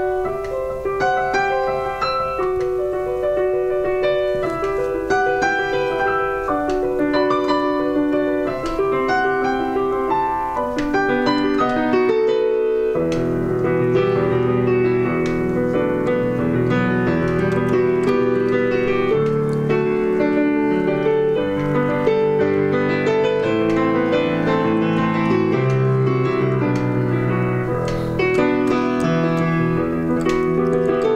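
Solo digital piano playing a melodic piece: a single-line tune in the middle and upper range at first, then about thirteen seconds in low left-hand bass notes come in and the playing becomes fuller.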